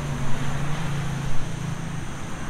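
Steady low engine hum of road traffic passing by.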